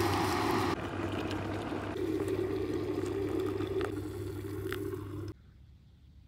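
Electric kettle heating water: a steady humming, rushing noise with a couple of faint clinks, which cuts off suddenly about five seconds in.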